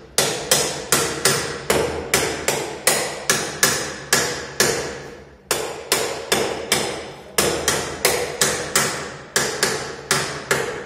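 Steady hammering, about two to three blows a second, each blow ringing briefly as struck metal does, with a short break about five seconds in.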